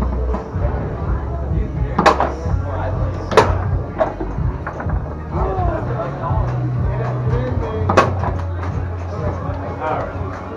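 Foosball game in play: the ball and plastic rod men clacking on the table, with three sharp hard knocks about 2, 3½ and 8 seconds in. Background music and chatter run underneath.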